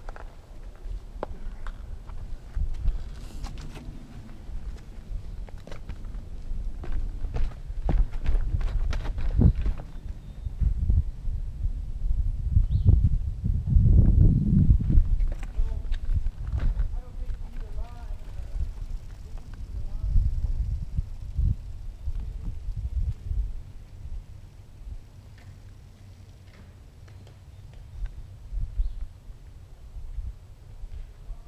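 Knocks and rattles from a mountain biker moving over rocks, over a low rumble of wind on the helmet-camera microphone. The rumble is loudest about 13 to 15 seconds in, and faint voices can be heard.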